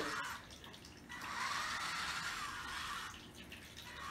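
Small DC gear motors of an Arduino robot car whirring as it drives, a steady whir starting about a second in and stopping about three seconds in.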